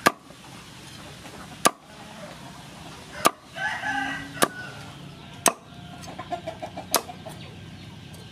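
A cleaver chops through crispy-skinned fried pork belly onto a wooden cutting board, making six sharp chops about one to one and a half seconds apart. A chicken calls in the background about halfway through, with short repeated calls a little later.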